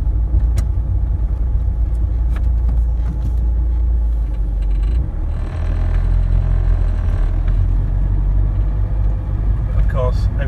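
Inside a moving car: a steady low engine and road rumble, with a rise of hiss for about two seconds around the middle.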